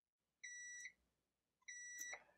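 Digital multimeter continuity beeper sounding twice, a short, faint, high-pitched beep each time, as the probes bridge the quarter-inch plug and each RCA jack of an audio adapter: each beep signals a connection.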